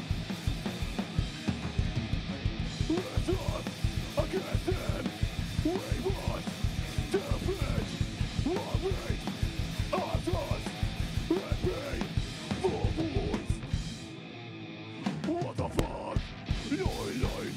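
Hardcore band playing live: fast, dense drumming with guitars and shouted vocals. The band cuts out for about a second near the end, then crashes back in.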